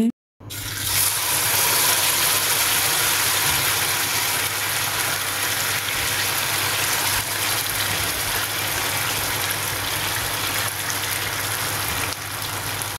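Chicken manchurian gravy sizzling steadily on a hot cast-iron sizzler plate, an even hiss with a faint low hum beneath it.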